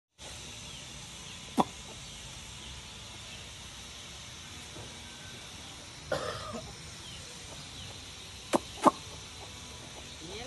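Outdoor yard ambience around a group of chickens: a steady hiss, broken by a sharp click early on, a short rasping burst about six seconds in, and two more sharp clicks close together near the end.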